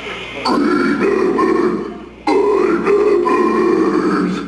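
Death-metal vocalist's deep guttural growls through the PA, two long growls with a short break between them.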